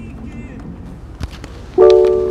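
A single click about a second and a quarter in, then near the end a sudden chime of several steady tones from the Ford SYNC in-car voice-command system, its prompt tone after the steering-wheel voice button is pressed, fading out slowly.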